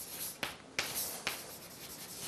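Chalk writing on a blackboard: a few short scratching strokes.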